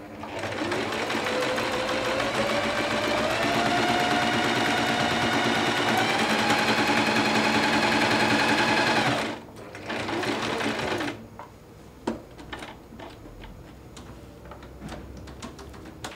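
bernette London 5 sewing machine stitching a buttonhole with its buttonhole foot. The motor whine rises in pitch as it speeds up, runs steadily for about nine seconds and stops. A brief second run of stitches follows, then a few clicks and taps.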